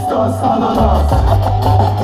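Live hip hop music played loud through a club PA: a beat with a deep, stepping bass line, and a single rapped word at the start.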